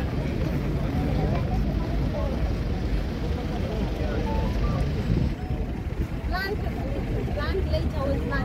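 Busy city street ambience: a steady low rumble of passing traffic under the chatter of a crowd of passers-by, with nearby voices clearer in the last couple of seconds.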